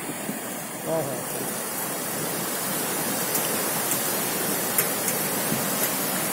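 The flood-swollen Ciliwung River rushing past in a fast, heavy torrent of muddy water, a steady, even rush of water noise.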